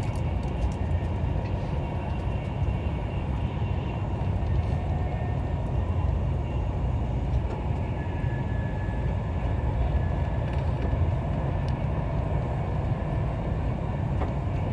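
Running noise heard inside a Class 390 Pendolino electric train at speed: a steady low rumble of wheels on rail, with a few faint steady whines above it.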